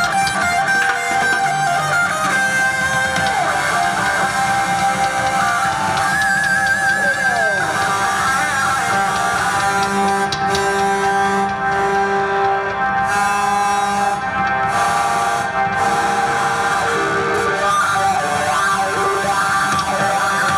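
A live technobanda band playing through a concert sound system, with electric guitars and keyboard, at a steady, loud level. A short high warbling line rises over the band about six seconds in.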